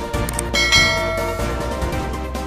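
Intro music with a bright bell chime sound effect laid over it, ringing out about two-thirds of a second in and fading within a second, marking the notification-bell icon of a subscribe animation. Short high clicks come just before it.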